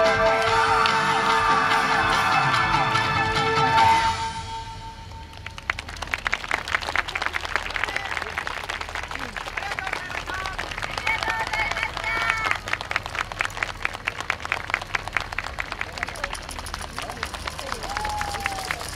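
Yosakoi dance music ends on a held final note about four seconds in; after a short lull the audience claps steadily for the rest of the time, with a few voices calling out partway through.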